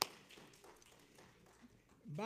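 A single hand clap right at the start, its echo dying away in a large room, followed by faint room tone.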